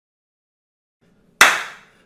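A single sharp hand clap, about one and a half seconds in, fading out quickly.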